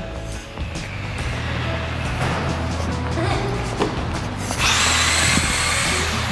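Background music with a steady low beat. About four and a half seconds in, an electric RC buggy's motor and tyres add a high whir for over a second as it speeds across the concrete floor.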